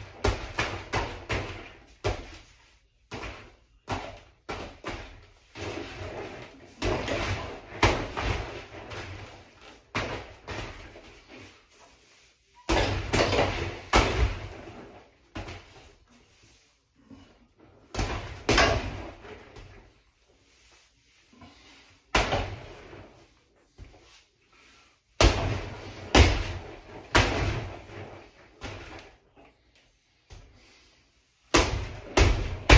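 Boxing gloves punching a hanging heavy bag: flurries of several quick thuds, with pauses of a second or two between combinations.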